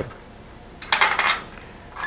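Metal hardware handled on an aluminum motor-mount board as a bolt is set in its hole and an aluminum L bracket is picked up: a brief metallic rattle about a second in, then a light clink near the end.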